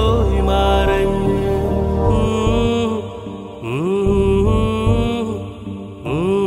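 Malayalam song: long held melodic notes, chant-like, over a low steady accompaniment. The loudness dips about halfway through, then a new note slides up in pitch and is held.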